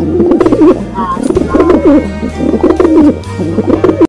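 Doves cooing loudly, one short wavering coo after another, over faint background music.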